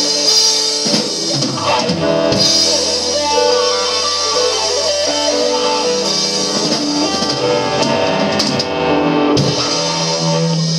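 Live blues band playing: a gold-top Les Paul-style electric guitar over drum kit, bass and keyboards, with held notes and chords.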